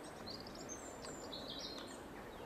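Small birds chirping, several short high calls over steady outdoor background noise.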